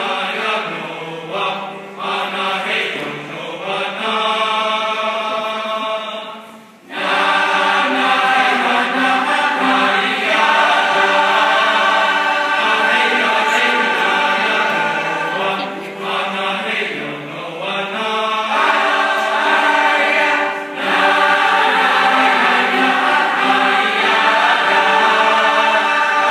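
A large mixed high school choir singing in harmony with grand piano accompaniment. After a brief break about seven seconds in, the choir comes back in fuller and louder.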